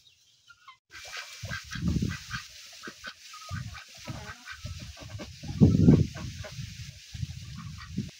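Domestic ducks quacking in a run of short calls that starts about a second in and is loudest a little past the middle, over a steady outdoor hiss.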